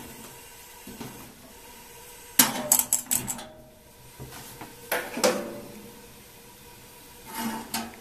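A quick run of about five sharp clicks about two and a half seconds in as the gas stove burner under the pan is lit, followed by another short clatter about five seconds in.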